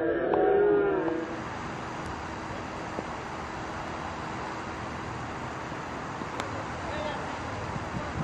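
Several men shouting in long, drawn-out calls in the first second, the loudest part. Then steady outdoor background noise with a faint hum, broken by a sharp knock about six seconds in.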